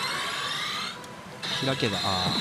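Pachinko machine effect sounds: a rising electronic sweep that stops about a second in, then a steady high tone that starts suddenly and holds. A short spoken word, "open", comes near the end.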